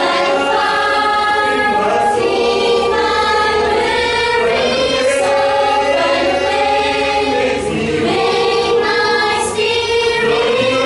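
A mixed choir of young men's and women's voices singing together in long held notes.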